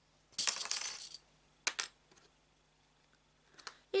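A brief rustle of fabric layers being handled, then two quick sharp plastic clicks as sewing clips are snapped onto the fabric edge.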